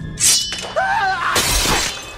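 Glass shattering in a film action scene: two loud crashes, about a second apart, with a short wavering cry between them.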